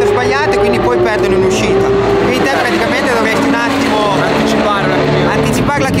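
A superbike engine running steadily under a conversation, its pitch dipping slightly about a second in.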